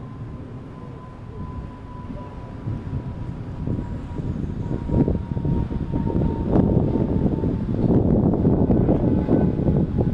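Outdoor city background: a low, uneven rumble that swells from about four seconds in, with a faint steady high tone that sinks very slightly.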